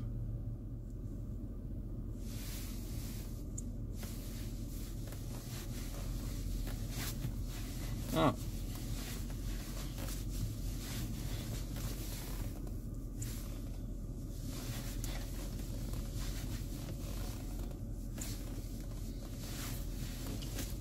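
Mercedes-Benz S550's V8 engine idling steadily, a low, even hum heard from inside the cabin.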